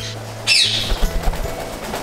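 Background music, with one short, shrill parrot call falling in pitch about half a second in.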